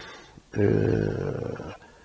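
A man's voice holding one long, level-pitched hesitation sound for just over a second, starting about half a second in and fading slightly: a filled pause between phrases rather than words.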